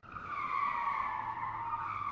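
A car tyre screech sound effect: one long squeal that starts abruptly, its pitch dipping slightly and wavering.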